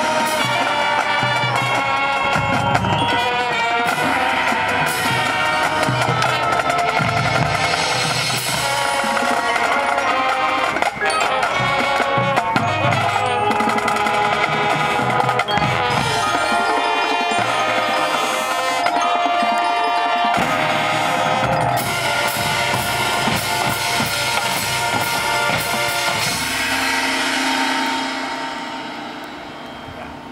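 Marching show band playing the last section of its field show live: brass and woodwinds over snare, bass drums and front-ensemble percussion, closing on a held chord that dies away near the end. The balance at the finish is uneven, which the director puts down to tired players sticking out and not matching volumes.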